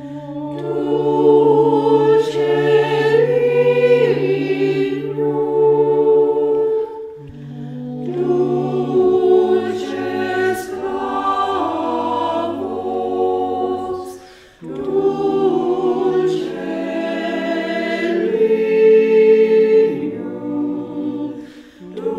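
Four-part SATB choir singing unaccompanied in Latin, sustained chords in three long phrases with brief breaks between them.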